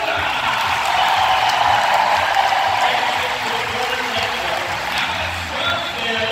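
Large arena crowd cheering and applauding, a dense roar that swells in the first half and eases near the end, with music playing beneath it.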